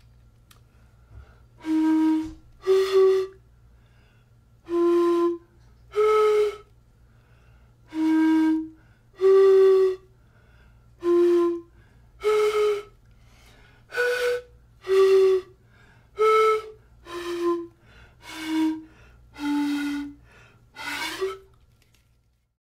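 Homemade PVC pan pipe of six one-inch tubes closed at the bottom, blown across the tops: about sixteen separate breathy notes, each under a second with short pauses between, stepping up and down its six-note scale from D to B. The last note wavers in pitch.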